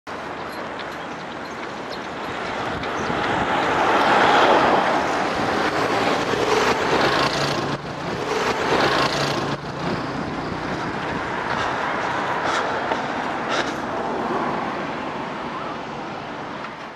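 Road traffic noise from vehicles passing along a street, swelling loudest about three to five seconds in as one goes by.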